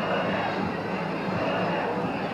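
Large festival crowd of danjiri pullers: many voices overlapping in a steady hubbub, with no single voice standing out.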